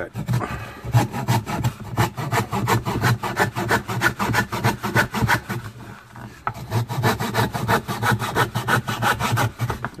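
Coping saw cutting through scrap wood by hand, with steady back-and-forth strokes of the thin blade rasping through the board along a line of pre-drilled holes. The rhythm eases briefly about six seconds in, then picks up again.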